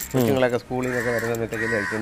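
A man talking in Malayalam.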